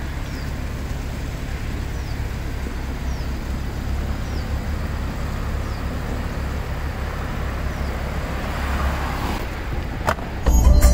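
Steady roadside traffic noise with a heavy low rumble. A faint, short, high chirp repeats every second or so, and a vehicle passes, getting louder near the end.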